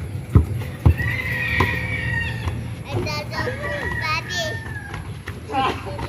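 A basketball bounces twice on the ground in the first second, then high, wavering vocal cries from the playing boys carry through the middle of the stretch.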